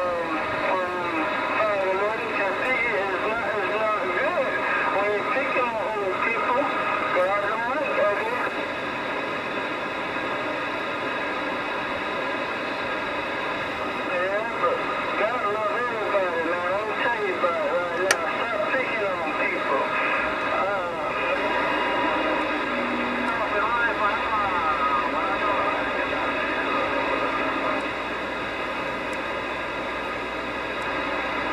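Galaxy DX2547 AM/SSB CB base station receiving through its speaker: steady static hiss with faint, garbled distant voices and warbling signals coming and going as the channels are stepped through. One sharp crack of static about two-thirds of the way through.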